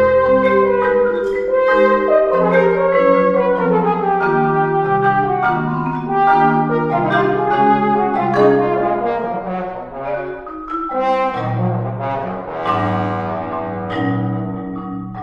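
French horn and marimba playing a fast passage together: held and moving horn notes over quick, rapid mallet strokes on the marimba, thinning briefly about ten seconds in before both pick up again.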